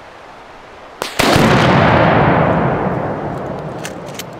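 Two sharp cracks a fraction of a second apart, then a long, loud rumbling blast that slowly fades: a gunshot and explosion as the balloon is shot down.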